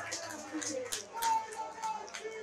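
Live football match sound at pitch level: scattered shouts and calls from players and a sparse crowd, with a few short, sharp sounds among them.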